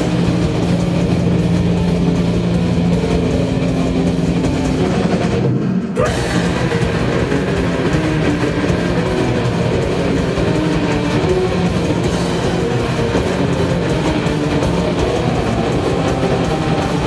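Live black metal / doom band playing loud, with distorted electric guitars and a drum kit. Long chords are held through the first five seconds, then there is a brief break about five and a half seconds in before the full band comes back in, denser.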